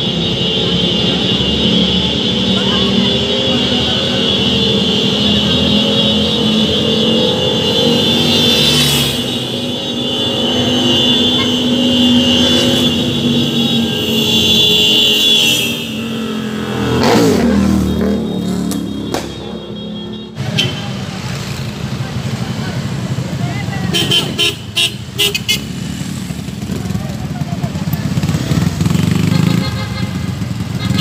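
Motorcycle engines running and revving, with one motorcycle passing close by about 17 seconds in. A steady high-pitched whine runs through the first half and stops about 16 seconds in.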